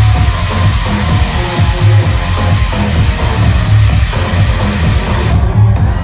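Electronic dance music played loud over a nightclub sound system, with a heavy bass line. A hissing wash in the high end cuts off suddenly about five seconds in.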